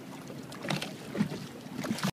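Quiet outdoor wind noise on the microphone over water lapping around a small boat in shallow water, with a few faint, brief sounds partway through.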